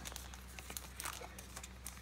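Faint crinkling and small scattered clicks of a plastic trading-card sleeve being handled.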